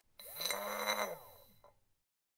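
A short intro sound effect, a sweeping whoosh with a steady low tone and a few high tones, starting just after a moment of silence and fading out within about a second and a half.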